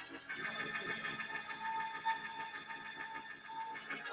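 Church keyboard playing sustained chords, with one note sounding again and again through the middle.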